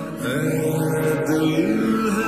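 Slowed-down, reverb-heavy lo-fi pop music: held notes, some sliding up in pitch, and no sung words.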